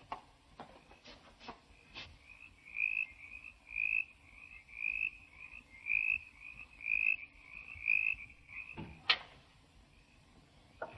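Faint high chirping call, repeated about once a second for several seconds, typical of a small night creature's call. A few soft clicks come before it, and a sharp knock near the end.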